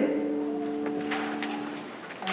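A praise band's final held chord ringing out and fading away at the end of a worship song.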